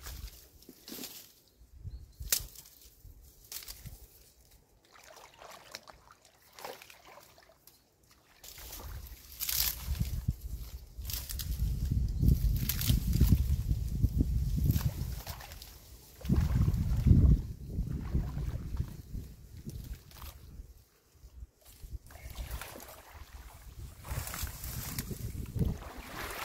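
Water sloshing and splashing around a person wading in shallow water among dry reeds, with scattered crackles of reed stalks being handled. Wind rumbles on the microphone for several seconds in the middle.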